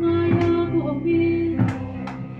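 Live singing with guitar accompaniment: a voice holding long notes over strummed chords.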